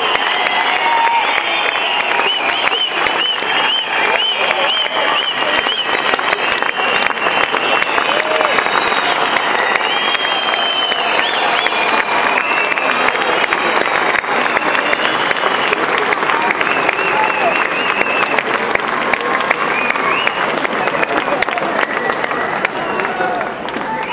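Concert audience applauding and cheering steadily, dense clapping with voices calling out above it.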